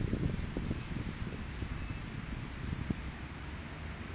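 Wind rumbling on the microphone outdoors, with a few soft low thumps in the first second and again about three seconds in.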